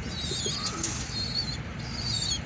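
Birds at a pigeon loft: high, wavering chirps over a steady low rumble, with one short rustle, likely of wings, a little under a second in.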